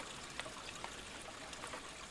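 Faint steady running water of a small forest stream, with a few faint ticks.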